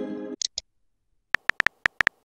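Texting-app sound effects. A message-received chime fades out, followed by two short high blips. After a pause, a quick run of virtual-keyboard tap clicks begins as a reply is typed.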